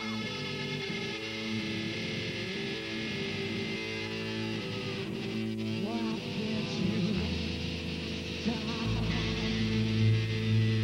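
Live hard rock band playing, electric guitars holding long sustained chords over bass and drums. A deeper bass note comes in about seven seconds in and again near the end.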